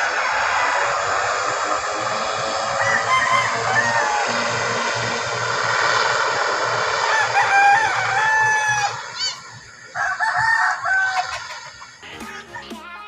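A rooster crowing several times, the longest call a little past halfway, over the steady, even noise of a twin-turboprop airliner's engines as it taxis. The engine noise drops away about three-quarters of the way in.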